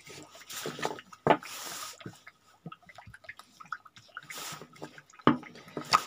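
A large deck of tarot cards being shuffled by hand: irregular clicks and short swishes as the cards slide and tap against each other, with a sharper snap about a second in and another near the end.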